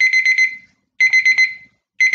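Digital countdown timer alarm beeping: a quick run of high pips about once a second, marking the end of a 90-second work period.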